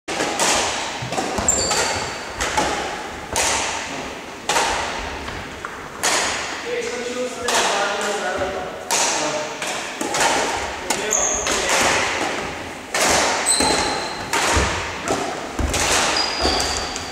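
Badminton rackets striking a shuttlecock in a rally: a series of sharp hits about once a second, each echoing through the hall, with a few short high squeaks of shoes on the court floor.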